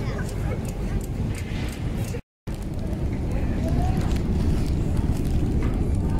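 Steady low rumble of a busy metro station, with scattered voices of people around. The sound cuts out for a moment about two seconds in, then the same rumble carries on.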